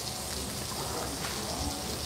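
Skirt steak searing in a hot pan, a steady sizzle.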